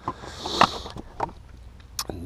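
A few light knocks and rustles from a plastic dashboard trim panel being handled, the loudest about half a second in.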